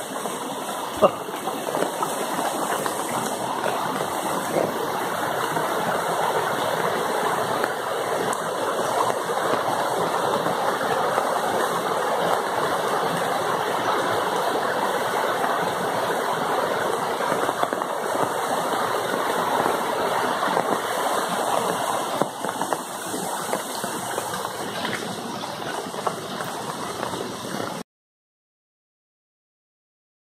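Mountain stream rushing over rocks in a steady rush of water, which cuts off suddenly near the end.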